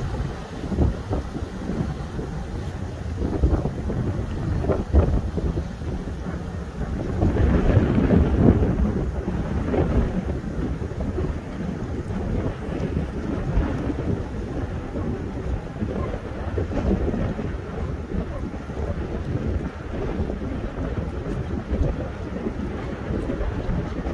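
Wind buffeting the microphone in irregular gusts, loudest about seven to nine seconds in, over the fading run of a speedboat's several outboard motors heading away across the water.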